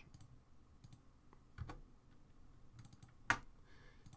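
A few faint clicks from working a computer, with one sharper click about three seconds in.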